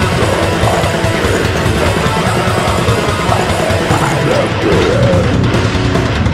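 Death metal played on a heavily distorted, down-tuned Schecter Omen electric guitar over a fast, dense drum track. A wavering melodic line rises above the chugging riff in the middle.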